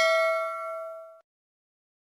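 Bell-chime sound effect of a notification bell, ringing with several clear pitches and fading out about a second in.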